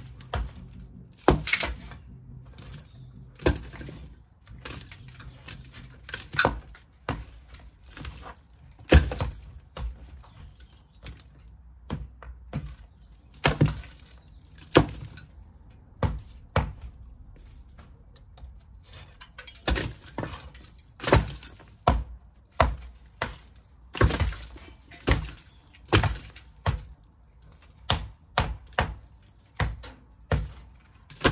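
Sharp, irregular hammer blows knocking bricks loose from the top of an old brick wall, with broken bricks and mortar clattering down onto the rubble below. The blows come closer together in the second half.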